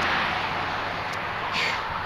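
A motor vehicle passing on the road, its tyre and engine noise a steady hiss that slowly fades as it moves away.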